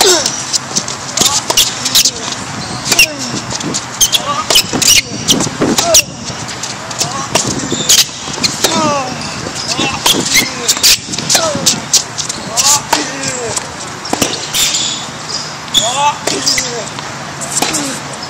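Tennis rally on an outdoor hard court: many sharp racket-on-ball hits and ball bounces at irregular intervals, with short squeaks of tennis shoes on the court surface.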